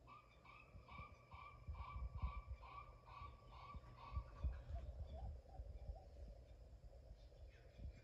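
Faint repeated chirp-like note, about two a second for some four seconds, then a few softer, lower blips, over a low rumble.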